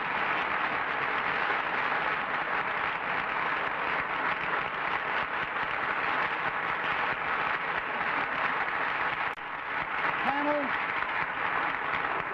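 Studio audience applauding, steady and unbroken, with a brief voice heard near the end.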